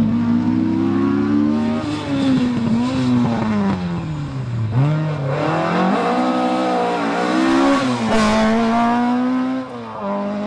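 Classic Ford Escort rally car's engine at hard throttle: revs held high, then falling steeply about halfway through as it slows and shifts down, and climbing again with a few gear changes. There is a short burst of hiss just after eight seconds.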